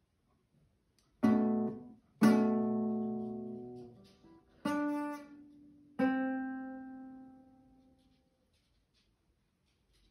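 Nylon-string classical guitar playing the closing chords of a piece: four chords plucked a second or so apart, the first stopped short, the last left to ring and fade over about two seconds.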